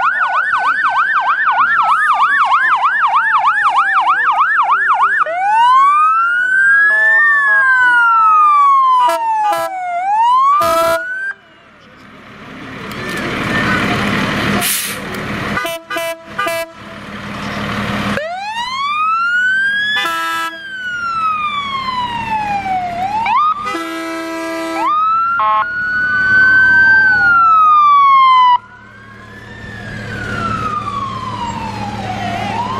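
Emergency vehicle sirens from a fire engine and an ambulance driving past. The sirens switch from a fast yelp in the first few seconds to slow rising-and-falling wails, broken by a noisy stretch with short horn blasts.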